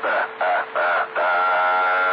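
A rooster's cock-a-doodle-doo crow coming in over a CB radio receiver: three short notes, then one long held note. A faint steady tone runs underneath.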